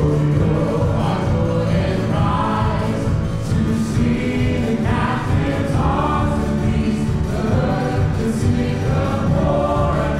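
Live contemporary worship band playing: several voices singing a held melody over acoustic guitar, piano, bass guitar and drums.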